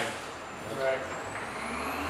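A thin rising whine climbs steadily from about a second in, over a low rumble that starts around the same time, with a short spoken word just before it.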